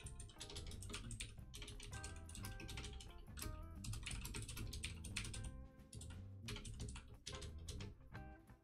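Typing on a computer keyboard: runs of quick keystroke clicks with short pauses between them. Quiet background music plays underneath.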